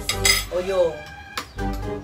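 Metal utensils clinking against plates and a steel pot as food is served and eaten at a table, with one sharp clink about one and a half seconds in.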